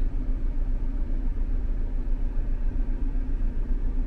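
A car's engine idling, heard from inside the cabin as a steady low rumble with a faint hum.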